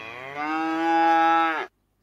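Recorded cow moo played as a sound effect from a digital flipbook's cow page: one long moo, rising in pitch at the start and then held, cutting off shortly before the end.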